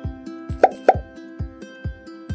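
Two quick message-bubble pop sound effects, close together about two-thirds of a second in, over background music with a steady beat.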